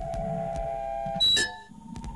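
Electronic beeping and held synthesizer tones from the track's noisy outro. A short, loud burst of noise with a shrill tone cuts in about a second and a quarter in, and the held tones then shift to a higher pitch.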